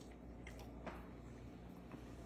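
Faint chewing of a mouthful of garlic knot and cheesy pizza dip: a few soft, wet mouth clicks over a low steady room hum.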